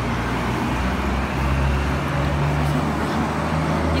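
Street traffic: a motor vehicle's engine hum with road noise, steady, the hum growing a little stronger about a second in.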